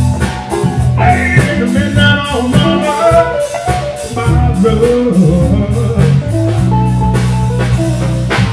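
Live small band playing a soul-blues tune, with drum kit, upright bass and electric guitar, and a male singer's vocal over it.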